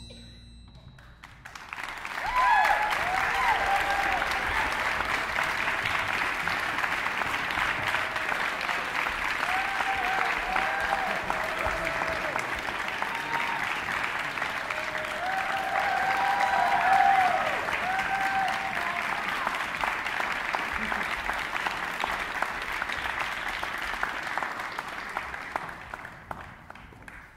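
A concert hall audience applauding, with shouts of cheering rising above the clapping. The applause breaks out after a hushed second or two of hall reverberation, builds to its loudest about two-thirds of the way through, and thins out near the end.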